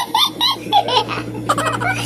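High-pitched giggling laughter in quick rising and falling peals, pitched like a baby's or a cartoon voice, over a steady low hum.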